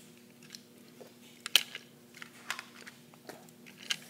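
A few separate sharp clicks and knocks of hard plastic Beyblade tops and launcher parts being handled, the loudest about one and a half seconds in, over a faint steady hum.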